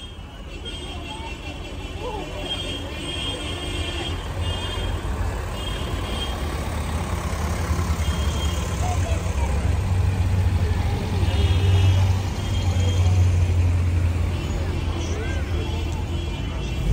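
Vintage cars driving slowly past one after another, their engines running at low speed. The low rumble grows louder as they come close and is loudest about two thirds of the way in, over background chatter from spectators.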